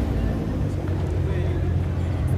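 Car engine idling, a steady low rumble, with crowd voices around it.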